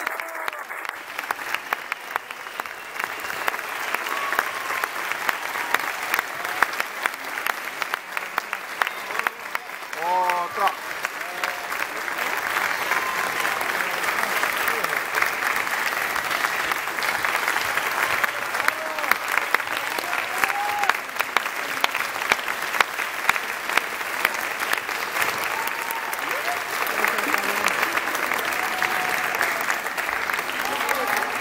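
Large audience applauding steadily, dense clapping throughout, with scattered voices calling out over it, including a brief whoop about ten seconds in.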